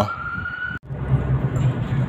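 A siren's single slowly rising tone that cuts off suddenly under a second in, followed by the steady low drone of a car cabin while driving.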